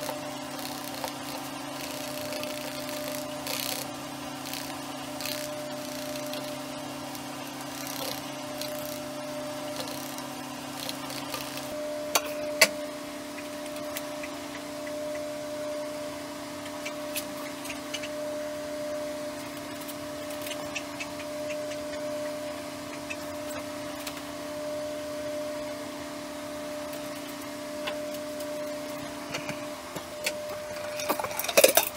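Wooden stir sticks scraping and ticking in plastic mixing cups as epoxy resin is stirred and poured, with one sharp click about twelve seconds in. Under it runs a steady electrical hum whose pitch mix changes at the same moment.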